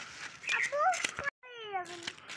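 A cat meowing nearby: a short rising call about halfway through and a longer falling meow in the second half. Sharp scrapes and clicks come from a knife scaling a large rohu fish.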